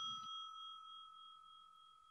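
The fading tail of a bell-like chime sound effect: two clear tones ring on and die away, gone by about a second and a half in.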